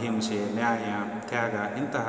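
Only speech: a man lecturing in a steady monologue.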